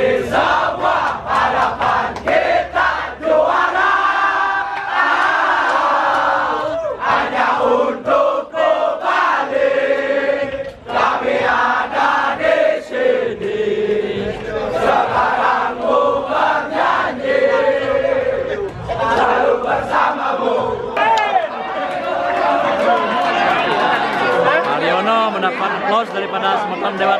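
A large crowd of football supporters chanting and singing together, loud throughout, with long held notes.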